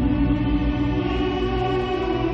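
Dramatic background score: a held chord over a deep low drone.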